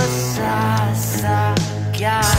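Filipino rock (OPM) band song playing, with electric guitar, bass and drums.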